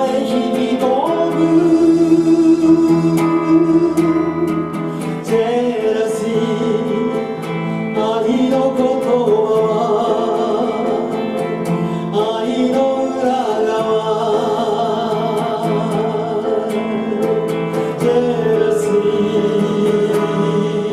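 Live performance of a Japanese pop song: a sung melody over electric guitar and band accompaniment.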